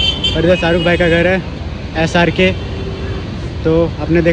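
People talking in short stretches over the steady rumble of street traffic.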